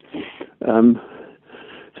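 A man's voice over a telephone line: a breath in, one hesitant "um", then faint breathing before he speaks again.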